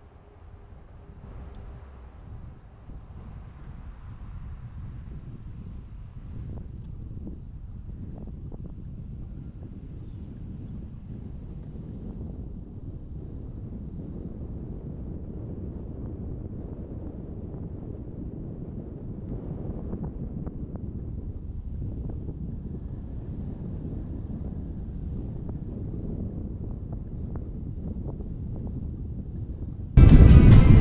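A car driving along a road: a low rumble of engine and tyres with wind on the microphone, growing steadily louder.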